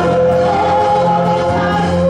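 Gospel worship song sung into a microphone: a woman's voice holds long notes, with other voices singing along over a steady low backing.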